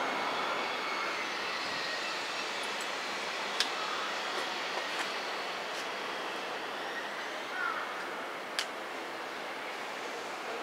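Steady distant rumble of a container freight train hauled by an EF66 electric locomotive approaching slowly along the track. A few sharp clicks sound over it, the loudest about a third of the way in and again near the end.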